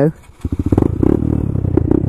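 Honda Grom 125's single-cylinder engine running through an aftermarket full exhaust system, a rapid even beat of exhaust pulses that comes in abruptly about half a second in after a brief lull.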